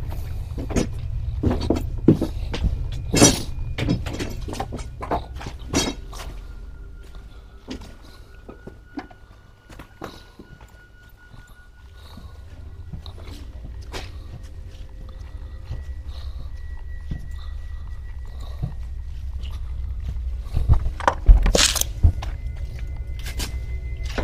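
Footsteps on a debris-strewn floor, a steady run of knocks and crunches that thins out and goes quieter in the middle, under quiet background music of long held notes. One loud thunk comes near the end.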